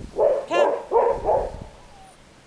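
Young border collie puppy barking about four times in quick succession, with short high yaps, then falling quiet.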